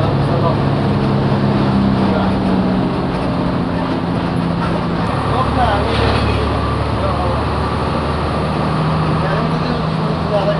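Bus engine running steadily with road noise, heard from inside the moving bus. The engine's drone shifts in pitch a few times: it drops about three and five seconds in and settles lower near the end.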